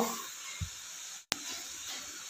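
Faint steady hiss of grated cauliflower cooking in a hot kadhai, with a soft knock about half a second in and a sharp click just past a second in.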